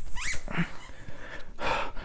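A small dog gives a short, rising whine near the start, followed by a breathy huff near the end.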